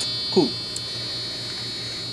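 Alarm tone from the FPGA clock's small breadboard speaker: a steady electronic buzz with a high whine. The alarm has been triggered by the clock reaching its set alarm time and stays on for the minute.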